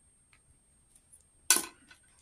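Pen writing on a paper budget sheet in a ring binder: a few faint light ticks against near quiet. About one and a half seconds in comes a single short, sharp rustle that dies away quickly.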